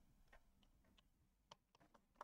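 Near silence, broken by a few faint, isolated clicks.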